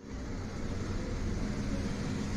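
Steady background noise: an even low rumble with hiss, with no distinct events.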